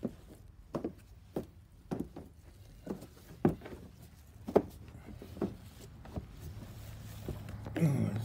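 A series of light knocks, roughly two a second and unevenly spaced, over a steady low hum.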